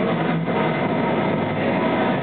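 Steady, fairly loud room noise inside an ice cream shop, with no single sound standing out.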